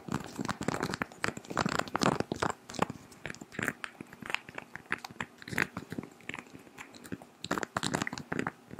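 Long fingernails tapping and scratching on a glass perfume bottle held right against the microphone: dense, irregular crisp clicks with short scratchy strokes in between.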